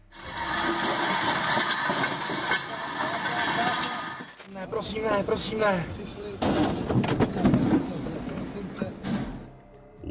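A derailed freight train's covered hopper cars rolling past, wheels grinding over the ballast, a loud steady rumble and rattle with faint high squealing tones that cuts off about four seconds in. After that come people's voices and a laugh.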